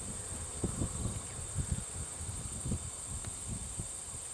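Outdoor field ambience: a steady, high-pitched chirring of insects, with a few soft, irregular low thumps.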